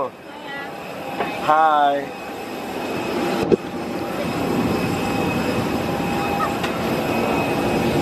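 Steady hum inside an airliner cabin, growing slightly louder over the last few seconds. A short burst of a voice comes about two seconds in, and a single sharp click about halfway through.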